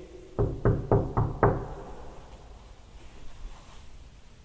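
Five quick knocks on a hard surface, about four a second, each with a short ring. It is a knock pattern given for a spirit to copy back.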